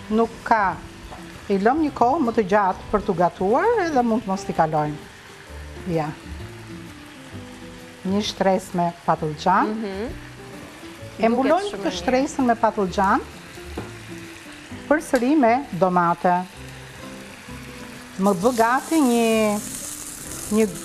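Food sizzling in hot pans on the stove, with a louder hiss swelling near the end. A voice with rising and falling pitch comes in and out over it.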